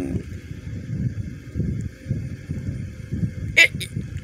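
Uneven low rumble of wind buffeting a phone microphone, with faint steady high-pitched tones behind it.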